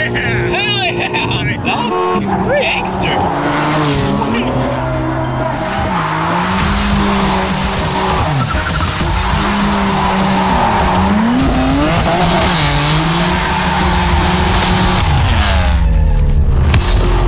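BMW M4's twin-turbo straight-six on a straight-piped titanium exhaust, revving up and falling back several times as the car drifts. The tyres squeal and skid throughout.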